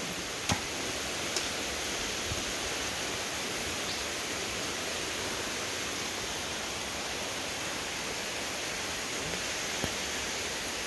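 Steady hiss of rain falling, with two brief sharp clicks in the first second and a half.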